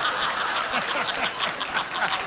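Studio audience applauding and laughing in response to a joke.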